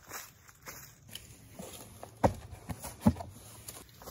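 Footsteps on the ground, a few scattered steps with two louder thuds a little past the middle.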